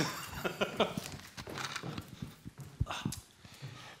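Plastic water bottle handled close to a table microphone: a scatter of light clicks, crackles and knocks as it is opened and lifted to drink.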